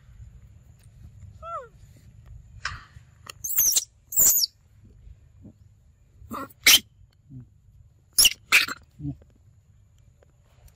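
Young macaques giving a series of short, high-pitched squeals, the loudest in pairs around the middle and near the end, after a small falling call early on.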